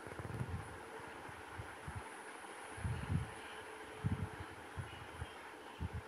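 Faint handling noise from cut cotton and satin frock pieces being moved and smoothed by hand on a stone floor: a few soft, irregular low thumps and light rustling over a faint steady hum.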